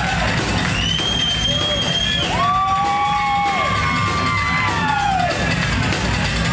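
Live band playing in a hall: upright bass and drums keep a steady beat under electric guitar, with long held high notes that slide down in pitch.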